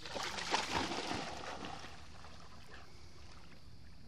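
A boxer dog splashing through shallow sea water, with a burst of irregular splashes in the first second and a half, then a faint steady wash of water.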